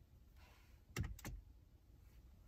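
An iPhone snapping onto a magnetic MagSafe vent mount: a sharp click with a soft thump about a second in, then two lighter clicks as it settles.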